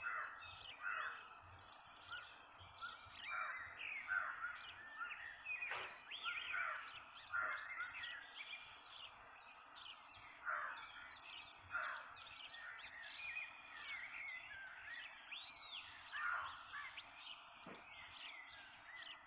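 Several birds calling outdoors: an overlapping series of short chirps and whistled, rising and falling calls, repeating every second or so over faint background noise.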